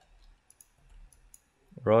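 A handful of faint, quick clicks from a computer mouse being used to drag and place a line in 3D modelling software.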